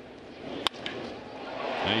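A single sharp crack of a wooden bat hitting a pitched baseball, about two-thirds of a second in. After it the stadium crowd noise swells steadily.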